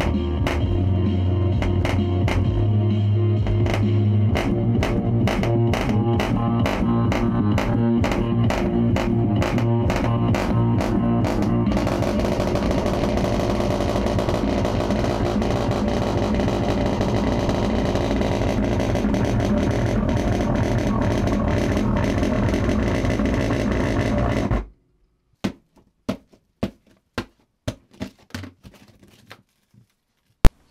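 Rock music with electric guitar played loudly through an old Realistic Nova-7B bookshelf speaker whose tweeter is not working. The music cuts off suddenly near the end, followed by a handful of sharp knocks.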